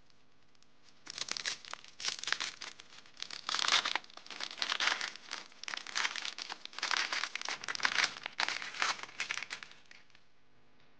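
Red cellophane wrapper of a Mini Babybel cheese crinkling as it is pulled open and peeled off by hand, in irregular bursts that start about a second in and stop just before the end.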